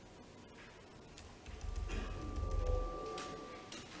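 A recorded excerpt of an electroacoustic cello piece playing faintly over the hall's loudspeakers, too quiet for the room. After about a second, a steady high held tone comes in over a low rumble, with a few soft clicks.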